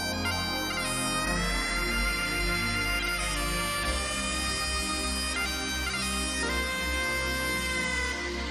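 Great Highland bagpipe played solo: a slow melody of long held notes, each sliding into the next, over the pipe's continuous drones.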